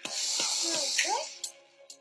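A deep, deliberate breath in, heard as an airy hiss that lasts about a second and a half and then fades, as part of a slow relaxation breathing exercise.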